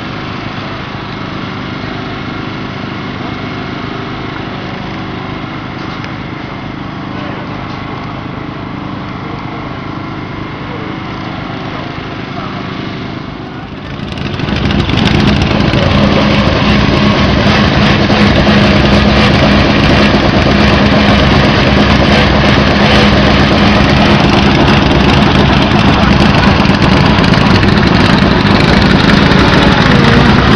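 An engine running steadily for the first part. About 14 seconds in, after a cut, a Škoda Fabia S2000 rally car's engine runs louder and close by at steady low revs as the car rolls slowly past.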